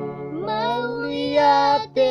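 Two young male voices singing a slow Batak-language song together over a strummed acoustic guitar, with a short break in the singing near the end.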